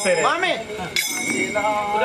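Men's voices chanting a devotional song, the last note held steady near the end, over a steady metallic ringing and a light metallic clink about a second in.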